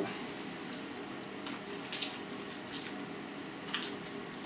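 Faint crackling and rustling of a pan-toasted lavash-wrapped shawarma being handled, with a few small crisp ticks and a sharper crunch near the end as it is bitten into.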